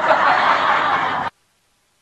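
Breathy laughter with no clear voice pitch, cut off abruptly just over a second in and followed by dead silence.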